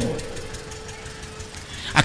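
A pause in a man's speech: faint background hiss with a faint steady hum-like tone that fades out shortly before the speech resumes, the last word trailing off at the start.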